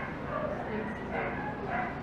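Faint, indistinct voices in the room: low murmured replies from a few people, with no single loud sound.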